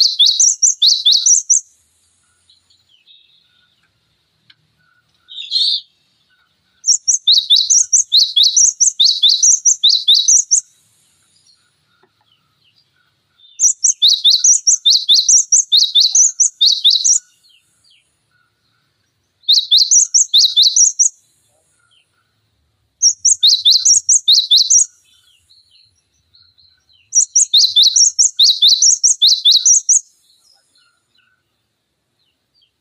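Cinereous tit (gelatik batu) singing: loud bouts of a quickly repeated two-note phrase, a high note dropping to a lower one, each bout lasting a few seconds before a short pause, then starting again.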